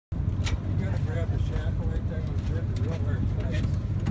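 People talking over a steady low rumble, with a few sharp clicks, the clearest about half a second in.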